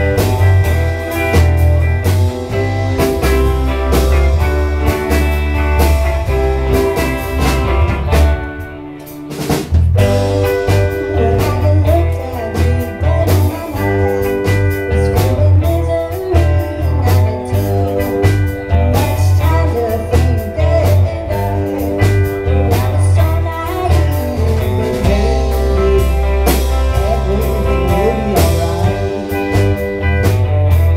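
Live rock band playing a song: electric guitars over drums and a heavy, steady bass line, with a brief drop in the playing about nine seconds in.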